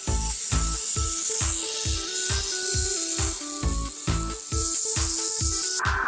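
Electronic background music with a steady beat and short stepping melody notes, with a steady high hiss running through it that cuts off just before the end, when a rougher, lower-pitched hiss takes over.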